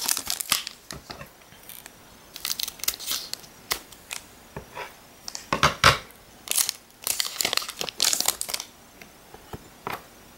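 Foil wrapper of a Pokémon card booster pack crinkling and tearing as it is handled and ripped open by hand, in irregular bursts, the loudest about six seconds in.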